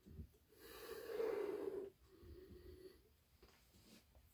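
A man sniffing deeply at the mouth of an open beer can: one long inhale through the nose lasting over a second, then a shorter, fainter sniff.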